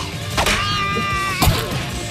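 Cartoon fight sound effects: a hit, then a held, high-pitched cry lasting nearly a second, cut off by another hard hit.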